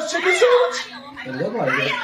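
Women's raised voices talking rapidly, high and sliding up and down sharply in pitch, with a brief lull about a second in.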